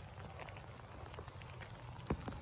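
Faint light rain: a soft, even hiss with scattered drops ticking.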